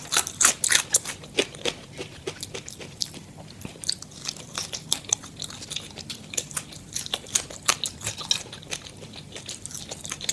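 Close-miked chewing and crunching of crispy KFC fried chicken and French fries, played back at double speed: a quick, dense run of crisp crackles and clicks.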